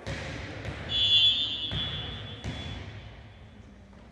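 A referee's whistle blows once, a high shrill tone lasting under a second about a second in, among a few sharp thumps of a volleyball being hit in a gym.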